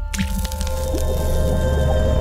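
A wet splat sound effect over a short music sting of held notes and a steady bass, the splat coming right at the start.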